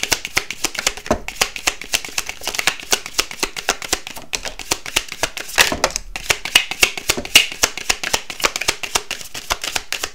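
A tarot deck being shuffled by hand, cards passed from hand to hand in a quick, uneven run of crisp flicks and slaps.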